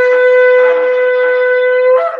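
A long, spiralled animal-horn shofar blown in one long, steady blast that lifts slightly in pitch as it breaks off, sounded to herald the Sabbath.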